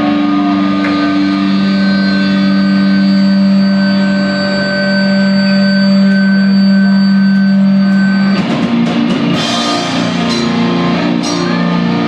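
Hardcore band playing live and loud: a distorted electric guitar chord is held and rings steadily for about eight seconds, then the drums and the full band come in.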